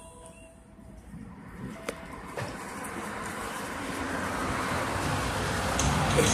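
Road traffic noise: a vehicle's rushing sound building steadily louder, with a single sharp click about two seconds in.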